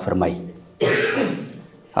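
A man clearing his throat once, a short rasping burst about a second in, just after the last word of a sentence.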